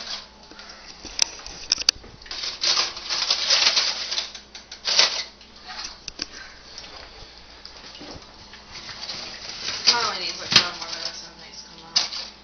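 Aluminium foil crinkling and rustling in short bursts as the foil over a roasting turkey is handled, with a few light clicks. A brief indistinct voice comes near the end.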